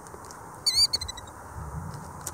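A mother ground-nesting bird, disturbed near her nest, gives one short high-pitched warbling call about two thirds of a second in, trailing off in a few fainter quick notes.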